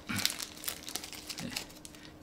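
Small clear plastic bag being torn open and crinkled by hand, with the sharpest crackling in the first half second.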